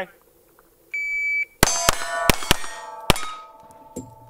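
A shot timer's start beep about a second in, then five quick shots from a KelTec CP33 .22 LR pistol within about a second and a half, each answered by a steel target plate ringing, the rings overlapping and fading out.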